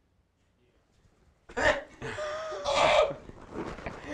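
A person bursting into loud, breathy laughter about a second and a half in, after a near-silent start; the laugh is strongest for about a second and a half, then tails off.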